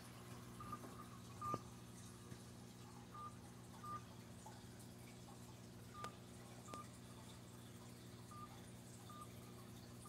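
Faint smartphone dial-pad keypad beeps as an account number is keyed into an automated phone menu: eight short beeps, mostly in pairs, over a steady low hum.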